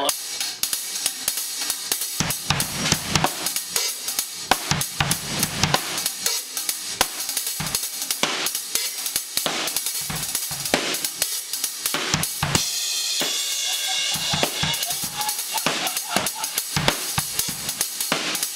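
Drum kit solo: dense, fast strokes on the drums mixed with hi-hat and cymbal hits, played without a break.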